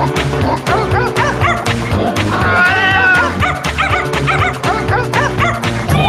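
Radio show intro jingle: music with a steady bass line, with dog barks and yips mixed in.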